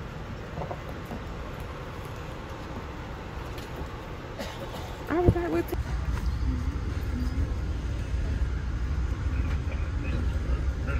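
Passenger train running, heard from inside the coach as a steady low rumble. About five seconds in there is a sharp knock with a short pitched sound, and then the rumble grows louder as the train moves off.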